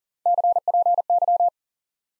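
Morse code tone sending the abbreviation 'CPY' (copy) at 40 words per minute: a steady mid-pitched beep keyed into three quick letter groups lasting about a second and a quarter.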